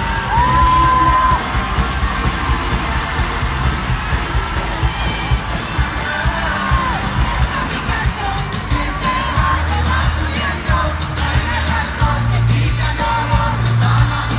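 Live pop concert heard from the crowd in an arena: an amplified band with a steady drum beat and bass under a singing voice, with crowd yells mixed in. Near the start the voice holds one long note.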